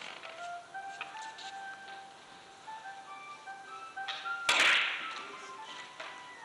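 Background music with a shifting melody. About four and a half seconds in comes one loud, sharp click of carom billiard balls, with a brief ringing after it.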